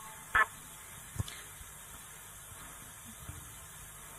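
Faint steady room-tone hiss on the control-room feed, broken by one short loud blip about half a second in and a fainter tick about a second later.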